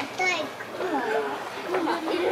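Several people's voices, children among them, talking and calling out at once.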